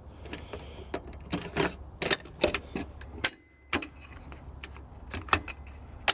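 Metallic clicks and clacks of an AR-15 being handled as its bolt carrier group is put back into the upper receiver, a string of short, separate knocks through the whole stretch.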